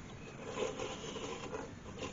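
A small turned wooden figure scraping and sliding on a wooden board as it is turned around by hand, with the rustle of the hand on it, starting about half a second in and lasting just over a second.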